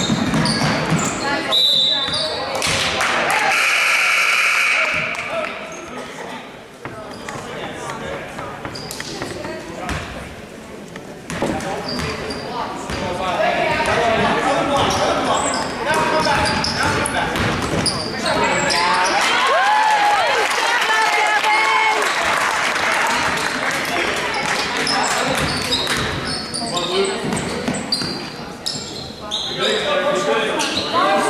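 Basketball bouncing on a gym's hardwood court during play, with players and spectators shouting, all echoing in the hall. A steady tone lasting about two seconds sounds about three seconds in.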